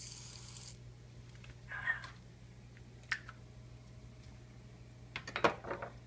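Aerosol whipped cream can spraying with a hiss that cuts off under a second in. Then a short rough burst about two seconds in, a sharp click near three seconds, and a few light clicks and knocks near the end, over a low steady hum.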